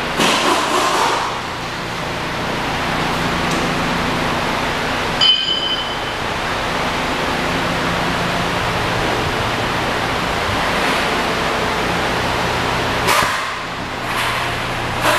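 A 2013 Cadillac SRX's 3.6 L V6 idling, a steady low hum under an even rushing noise. About five seconds in, the liftgate shuts with a sharp clack and a short high beep.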